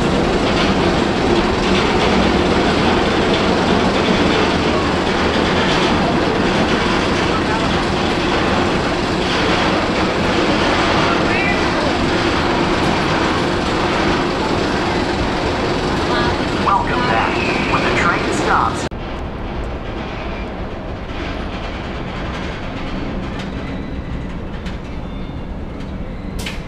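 Bolliger & Mabillard hyper coaster's chain lift hauling a loaded train up the lift hill: a steady, loud mechanical rattle with a constant hum. It cuts off suddenly about three-quarters of the way in, leaving a quieter background.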